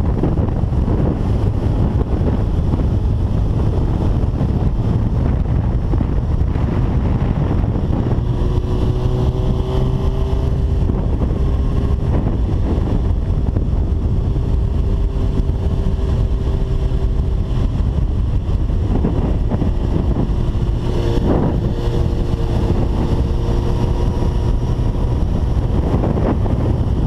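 Heavy, steady wind buffeting on a microphone mounted on a 2005 Suzuki GSX-R1000 at track speed. The bike's inline-four engine note comes through faintly under the wind from about a third of the way in.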